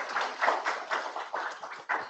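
Audience applauding: many hands clapping together, thinning out near the end.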